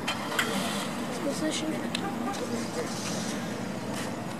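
Outdoor vehicle and traffic noise from cars nearby, with faint indistinct voices and a few light clicks.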